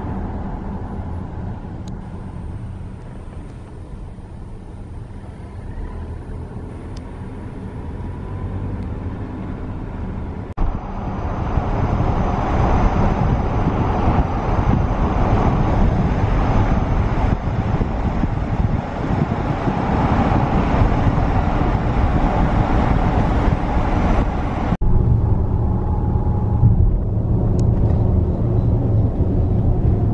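Steady road and tyre noise with engine rumble, heard from inside a moving car. It jumps suddenly louder and brighter about ten seconds in and changes abruptly again a few seconds before the end.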